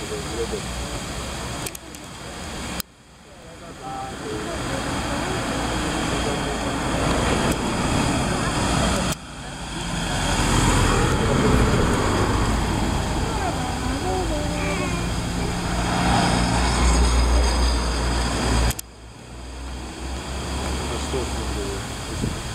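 Iveco Foxbus coach's engine running close by, a loud low rumble with a steady hum, loudest in the middle and second half, with road traffic noise around it. The sound jumps abruptly a few times where the recording is cut.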